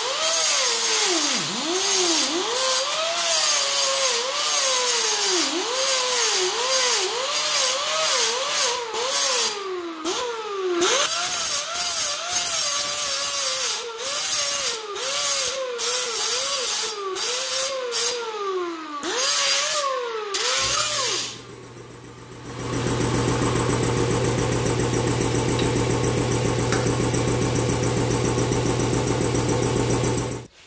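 Angle grinder with a 24-grit flap disc grinding the notched end of a steel roll-cage tube, its motor pitch dipping and recovering again and again as it is pressed into the metal and let off. About 21 seconds in the grinding stops, and after a brief lull a steady, even running sound holds to the end.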